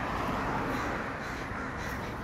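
Crows cawing in the background, at a steady level.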